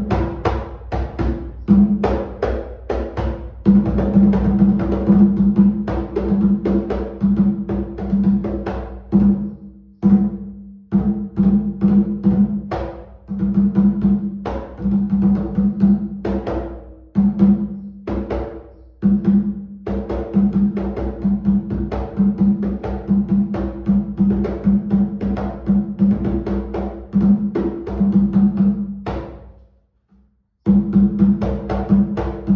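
Atabaque lé, an 80 cm traditional wooden hand drum with a goat-skin head, played with bare hands in a fast steady rhythm. Each stroke rings with a deep pitched tone, and the wide rum-size head gives the drum a deeper sound. The playing breaks briefly once and stops just before the end.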